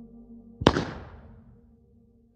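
A low sustained musical drone, then a single loud, sharp bang just over half a second in that rings away over about a second.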